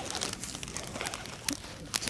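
Fabric of a pop-up lantern softbox rustling and crinkling as it is handled and fitted onto a light's frame, with a couple of sharper clicks near the end.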